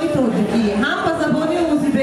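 A woman speaking into a handheld microphone.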